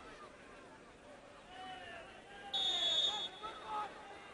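Referee's whistle blown once, a short, steady, high-pitched blast of just under a second about two and a half seconds in, signalling the free kick to be taken. Faint shouts from the pitch and stands around it.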